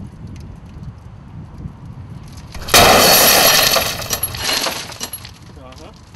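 A hammer blow shatters a pane of tempered safety glass about two and a half seconds in: a sudden loud crash as the glass bursts into many small pieces, then a rush of tinkling fragments that dies away over about two seconds.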